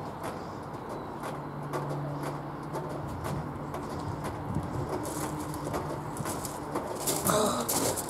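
Open-air ambience with a pigeon cooing faintly, low and steady, and scattered soft knocks from a horse's hooves on turf.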